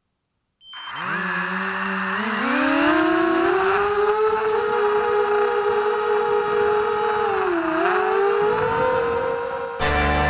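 Armattan Morphite 180 quadcopter's brushless motors and propellers, heard through its onboard RunCam HD camera. After a brief silence the whine climbs in pitch as the quad spools up and lifts off. It then holds a steady high whine in flight, dipping briefly and coming back up about eight seconds in.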